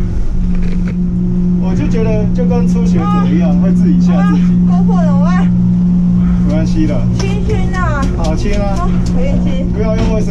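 Gondola lift machinery heard from inside the cabin: a loud, steady mechanical hum with a strong low tone that holds unchanged throughout as the cabin runs through the terminal.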